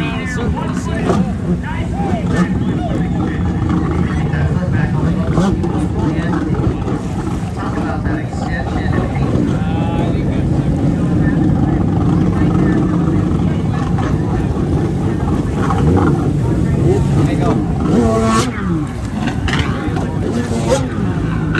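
Freestyle jet ski engine revving up and down, its pitch rising and falling as the ski is thrown through flips and spins, with water spray. Spectators' voices chatter close by.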